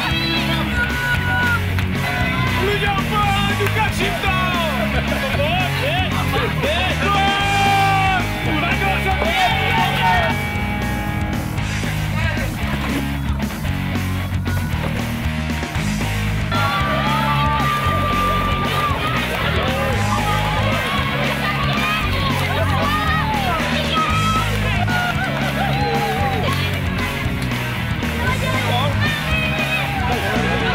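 Rock music with guitar and a steady driving beat, with voices over it.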